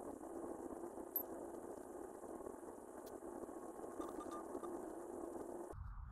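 Faint steady hiss that cuts off abruptly near the end.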